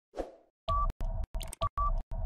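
Video sound effects from a quiz's answer countdown: a soft pop-like whoosh, then, from under a second in, a stuttering electronic jingle of steady beeping tones over low thumps, chopped into short pieces that cut in and out several times a second.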